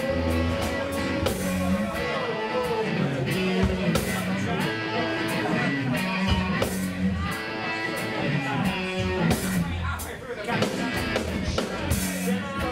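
Live rock band playing: electric guitar and drum kit with cymbal hits, and a man's voice singing into a microphone over the band.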